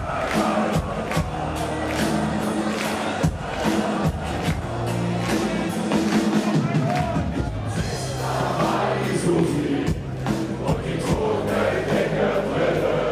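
Live rock band playing: distorted electric guitars, bass and drums with regular beats, voices singing over it and crowd noise, heard loud from among the audience.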